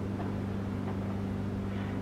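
A steady low hum, with a faint even hiss, holding level throughout.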